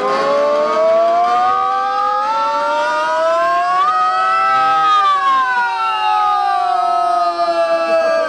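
A singer's voice holding one long 'oh' that slides slowly up in pitch, peaks about halfway through and slides back down, like a siren.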